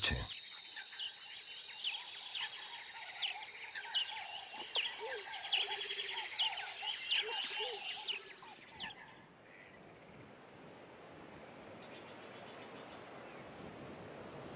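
Wild ambience: a steady, high insect trill like a cricket's, with birds chirping and calling repeatedly over it. About nine seconds in the calls and trill fade, leaving a soft, even hiss.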